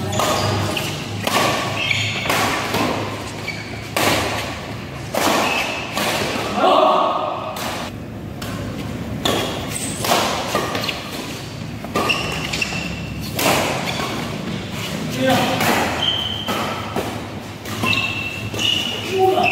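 Badminton doubles rally: irregular sharp smacks of rackets striking the shuttlecock and thuds of players' footwork on the court, with players calling out between shots.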